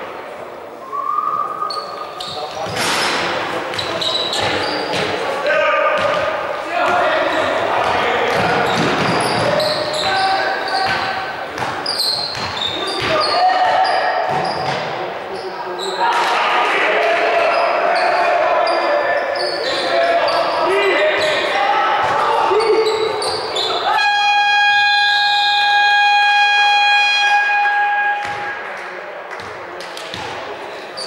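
Youth basketball game in an echoing gym: ball bouncing, impacts and players' shouts. About 24 s in, a scoreboard buzzer sounds one steady tone for about four seconds, the signal that stops play for a timeout or the end of a period.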